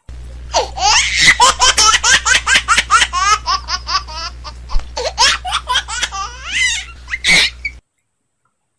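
High-pitched, rapid laughter, a quick run of rising and falling 'ha' syllables for about seven seconds, cutting off suddenly near the end over a steady low hum. It is an edited-in laugh sound effect, not the eater's own laugh.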